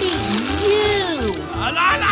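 A hissing spray as ink is blown out of an uncapped marker held in the mouth, spattering the paper; the hiss fades out about a second and a half in. Over it a voice holds one long, wavering 'oh', and there is background music with a steady beat.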